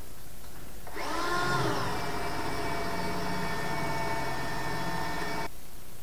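Cordless drill running for about four and a half seconds with a steady whine. It spins up about a second in, its pitch rising and then settling, and cuts off suddenly near the end.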